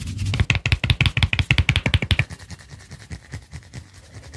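Rapid, rhythmic strokes of hands working the scalp and hair during a head massage, about ten a second, louder in the first half and fading after about two seconds.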